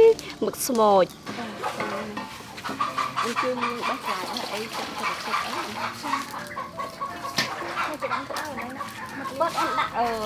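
Domestic chickens clucking on and off, after a short loud voice at the very start; the clucking is quieter than that voice.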